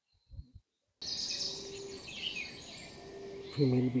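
Outdoor bird chirping over a steady background hiss. It cuts in abruptly about a second in, after near silence, and a man's voice starts near the end.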